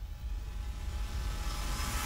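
Sound-effect swell for an animated team-logo outro: a low rumble with hiss that grows slowly louder and brighter.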